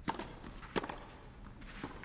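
Tennis racquets striking the ball on a clay court: three hits about a second apart, a serve, its return and the next shot, with the second hit the loudest.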